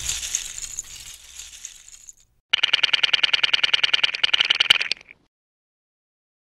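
Plastic LEGO bricks clattering and scattering, fading over about two seconds. After a short gap comes a rapid, even run of clicking for about two and a half seconds as the bricks snap together, and it stops suddenly.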